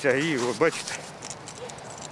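A man's voice speaking for under a second, then a quieter outdoor background with a few faint clicks and knocks.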